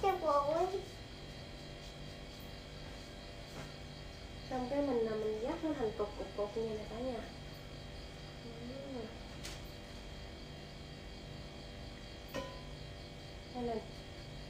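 A voice making short, sing-song vocal sounds with no clear words, rising and falling in pitch at the start and again from about four to nine seconds in. A steady electrical hum runs underneath.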